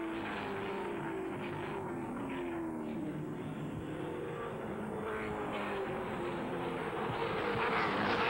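Touring race car engines running on the circuit, their notes holding and shifting as the cars go through a bend.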